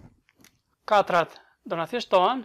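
A man's voice speaking Albanian in short phrases, starting about a second in after a near-quiet pause.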